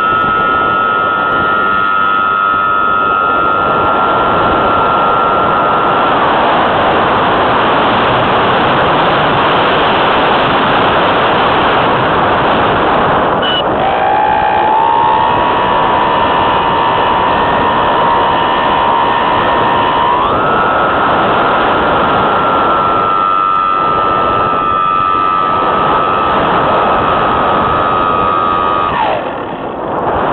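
Model aircraft's motor giving a steady high whine over loud wind rush on the onboard camera's microphone. The whine fades about six seconds in, returns lower a little before halfway, steps up in pitch about two-thirds through, and cuts off shortly before the end.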